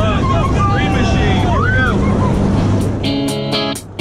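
Several people whooping and shouting over the steady drone of a small plane's engine inside the cabin. About three seconds in, strummed guitar music starts.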